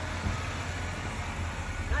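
A car running at the curb: a steady low rumble with a hiss over it.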